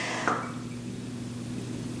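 Bathwater running into the tub's overflow drain, heard as a faint steady low hum over a light watery hiss. The water level has reached the overflow.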